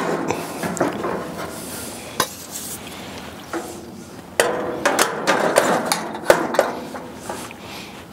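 Metal clanks, knocks and scrapes as the red steel fuel tank and its generator tube are set down and fitted inside the steel case of a vintage Coleman two-burner liquid-fuel camp stove. Several sharp knocks come at irregular moments, the loudest a little after six seconds in.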